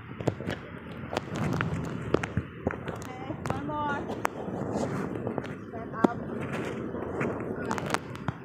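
Women's voices calling out and chattering in short bursts, over a steady outdoor background. Many sharp clicks and pops are scattered throughout.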